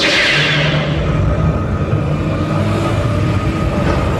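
Dark-ride effects soundtrack and Enhanced Motion Vehicle: a loud rushing hiss bursts in at the very start and fades over about a second, over a steady low rumble and droning low tones that run on.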